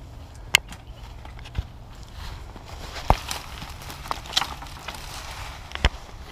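Footsteps moving through dense creekside scrub, with leaves and brush rustling and a few sharp snaps.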